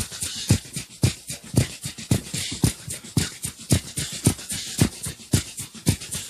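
Drum kit playing a steady beat on its own: a kick drum about twice a second under a busy run of cymbal strokes.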